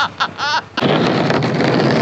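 Large ARRMA RC car speeding at full throttle toward and onto a plywood jump ramp right beside the microphone: a sudden loud rush of motor and tyre noise starts about a second in and holds steady.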